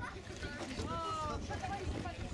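Background voices of several people talking and exclaiming, one voice rising briefly about a second in, over a constant low wind rumble on the microphone.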